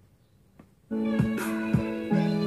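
After a faint tap, guitar music starts suddenly about a second in, played from a phone through the Polytron PAS 68-B active speaker as a sound test after its power-supply repair.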